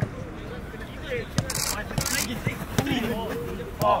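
Footballs being kicked on an artificial-turf pitch: several sharp thumps, irregularly spaced about half a second to a second apart, with players' voices calling in the background.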